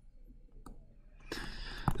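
Faint, scattered clicks of a stylus tip tapping on a touchscreen while words are handwritten, followed by a short hiss near the end.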